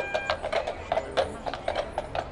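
Horses' hooves clip-clopping on a paved street, a run of irregular clicks several a second as a group of horses passes.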